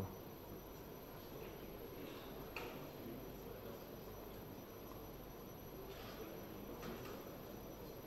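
Quiet steady hiss with a few faint, scattered clicks and taps of surgical instruments being handled in the wound.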